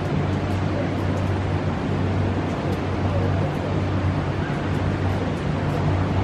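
Steady low hum with a constant rushing noise, typical of large ventilation fans running in an indoor arena, with a few faint scattered ticks.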